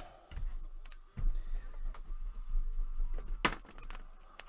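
Irregular clicks and taps of typing on a computer keyboard, the strongest near the end, over a steady low hum.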